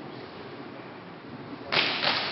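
Faint hall hush, then near the end a sudden loud slap as an aikido partner is thrown down and lands on the judo-style mat.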